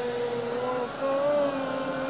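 Chanting of Arabic salawat (blessings on the Prophet) in long held notes, the pitch stepping up slightly after a brief break about a second in.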